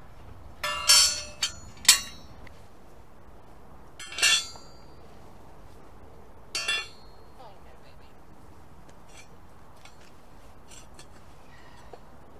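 Metal hoof stand and steel hoof rasp clinking against each other as the stand is handled and moved into place: several sharp, ringing clanks in the first seven seconds, then only faint light ticks.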